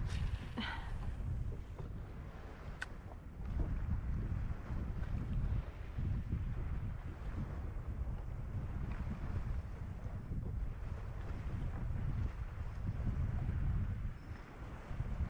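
Wind buffeting the microphone, a low rumble that rises and falls in gusts, with one sharp click about three seconds in.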